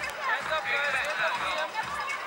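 A crowd of young children talking and calling out at once in high-pitched voices, with no one voice standing out.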